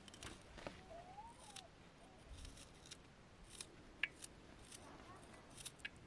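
Small knife slicing an onion held in the hand: a faint, irregular series of short crisp cuts, with one sharper click about four seconds in.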